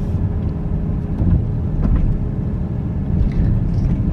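Aston Martin DBX's twin-turbo V8 and road noise heard from inside the cabin: a steady low drone while driving slowly.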